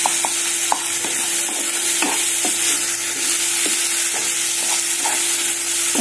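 Chopped onions and tomatoes frying with a steady sizzle in a granite-coated nonstick pan, stirred with a spatula that scrapes and knocks against the pan about once a second. This is the onion-tomato masala base cooking down with its spice powders.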